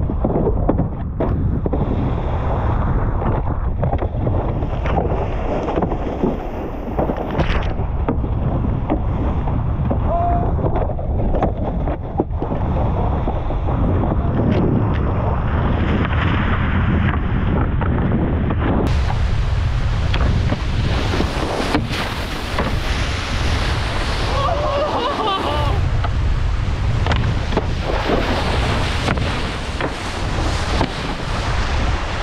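Wind buffeting the microphone over the rush and spray of water from a cable-towed wakeboard cutting across the lake. The sound is dense, steady and rumbling, and its character changes about two-thirds of the way through.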